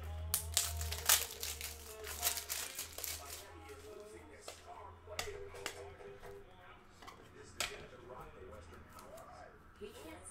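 Plastic crinkling and rustling as trading cards and their sleeves and packaging are handled and packed, with a quick run of sharp crackles in the first three seconds and a couple of single crackles later on.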